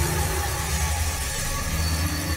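Logo-sting sound effect: a steady, deep rumble under an even hiss, with a faint drone held through it.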